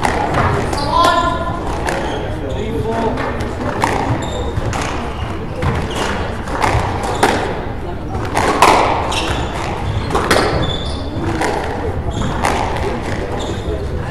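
A squash rally in an echoing court: the hard rubber ball is struck by rackets and smacks off the walls as a string of sharp knocks at irregular spacing. Short high squeaks of court shoes on the wooden floor come between the knocks.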